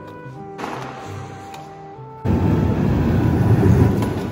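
Background music, then about two seconds in the loud, rough rumble of skateboard wheels rolling on a concrete floor comes in suddenly and runs on over the music.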